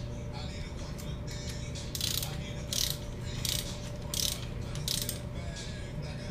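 Torque wrench ratcheting in short strokes while tightening the camshaft cap bolts on an Acura TSX's cylinder head. There are about five crisp ratchet bursts, roughly two-thirds of a second apart, in the second half.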